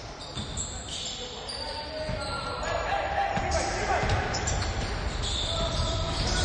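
A basketball bouncing on a hardwood gym court during play, a few sharp thuds among players' voices and court noise.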